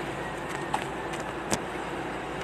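An engine running steadily, with two sharp knocks, one about a third of the way in and a louder one about three-quarters in.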